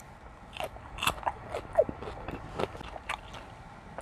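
A person biting into and chewing a slice of raw cucumber: a run of crisp, wet crunches at an irregular pace, picked up close by a clip-on microphone.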